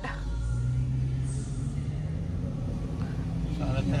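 Steady low rumble of a car's engine and road noise heard from inside the cabin as the car creeps through traffic.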